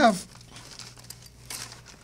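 A spoken word trails off, then faint rustling and crinkling handling noise as someone rummages for a USB drive.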